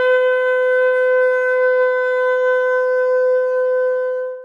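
Shofar blown in one long, steady held note with a bright, buzzy stack of overtones, tapering off near the end.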